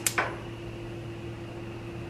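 Gas stove burner's spark igniter giving its last click or two at the very start, then a steady low hum with a faint hiss.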